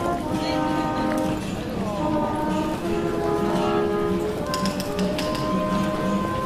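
Trumpet playing a slow melody of long held notes. Close by, several sharp footstep clicks from passers-by on a hard paved floor about two-thirds of the way through.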